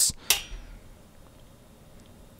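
One sharp click as a two-ohm load resistor is switched onto a bench power supply's output, followed by a faint low thump.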